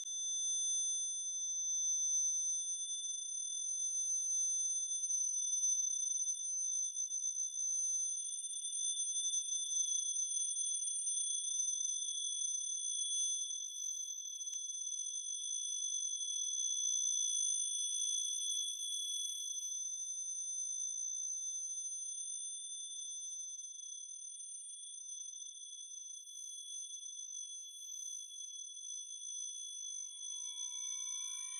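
Acousmatic electroacoustic music: several steady high tones sounding together as one sustained chord, softening a little in the second half.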